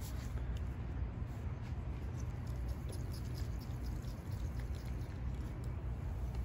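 Faint, scattered light clicks and scratches from a small plastic pot of gritty perlite-rich soil being handled, over a steady low rumble.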